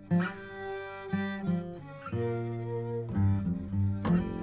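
Acoustic bluegrass string band playing an instrumental passage between vocal lines: bowed fiddle over acoustic guitar and upright bass, with new notes coming in about once a second.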